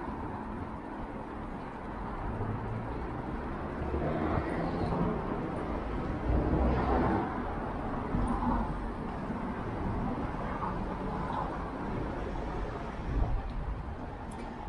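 Street noise picked up from a moving fat bike: a low, uneven rumble of tyres and wind on the microphone over general traffic, swelling louder about halfway through and again near the end.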